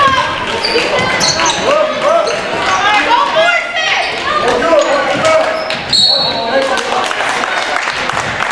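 Basketball game in a gym: a ball bouncing on the hardwood floor amid overlapping shouts from players and spectators, all echoing in the large hall.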